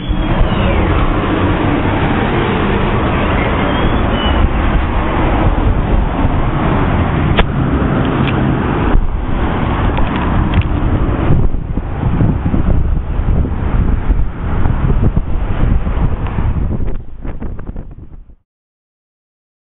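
City street traffic noise, dense and steady, with two sharp clicks about seven and eight seconds in; the sound thins out near the end.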